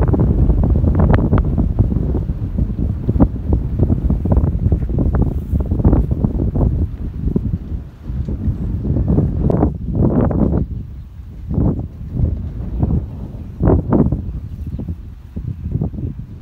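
Wind buffeting the microphone in the open air: a loud, uneven rumble, heavy for the first half and then falling back into separate gusts after about eight seconds.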